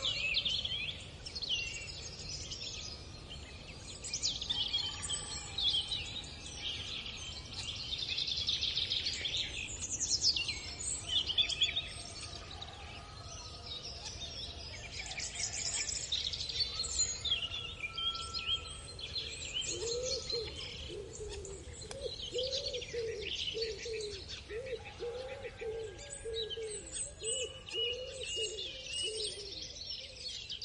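Several small birds chirping and singing, with busy overlapping high trills and tweets. In the last third a lower, short note repeats over and over, about twice a second.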